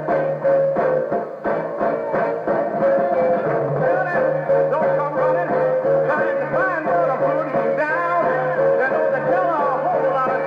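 A 1960s soul band playing a song with a steady beat, and a singer's voice coming in about four seconds in.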